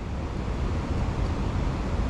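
Steady outdoor background noise: a low rumble with an even hiss above it, like wind on the microphone and distant city noise, with no clicks or other distinct sounds.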